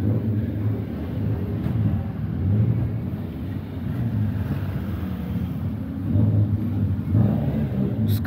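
Car engines running at low revs, a steady low rumble that swells a couple of times.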